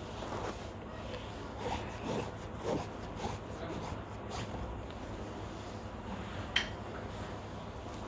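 Metal ladle stirring and scraping onion-tomato masala in a cast-iron kadai: a few soft scrapes over the first three seconds or so, then the pan left to cook quietly, with a single sharp click late on.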